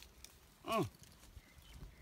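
A man's brief vocal "oh" about a second in, falling in pitch, over faint scattered crunching of footsteps on dry leaf litter.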